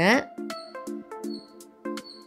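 Light background music with a bouncy pattern of short, plucked-sounding notes. A voice trails off in the first moment.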